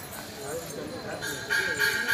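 Rhythmic metallic, bell-like ringing, struck about four times a second. It is faint early on and comes back louder about a second and a half in, over a murmur of voices.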